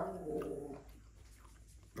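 A dog barking indoors: the tail of a sharp bark right at the start, then a short whine that fades within the first second, leaving it quiet.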